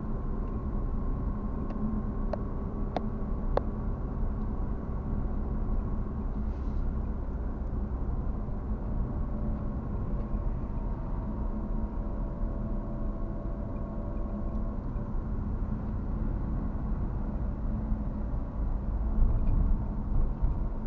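Steady low road and engine rumble of a car driving, heard from inside the cabin, with a few faint clicks a couple of seconds in.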